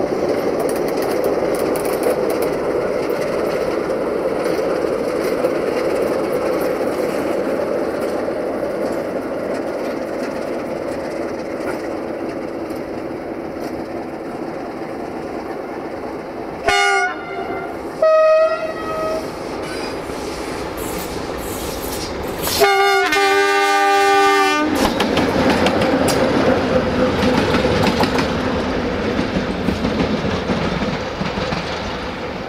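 Romanian 060-DA (LDE2100) diesel-electric locomotive running steadily as it approaches. Just past halfway it sounds its horn in two short blasts, then about five seconds later gives a longer blast of about two seconds. It then passes close with louder engine noise and its wheels clattering over the rail joints.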